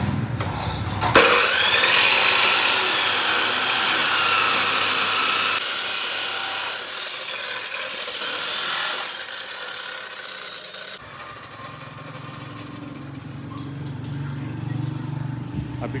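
Abrasive chop saw cutting through a steel rectangular tube: a loud grinding screech with a wavering whine, starting about a second in and lasting some eight seconds. Then the cut ends and the sound drops away, and a steady low hum follows in the last few seconds.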